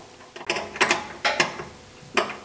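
Ratcheting wrench clicking in several short strokes as it tightens the distributor's hold-down clamp nut.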